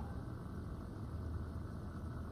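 Faint room tone: a steady low hum under a soft even hiss.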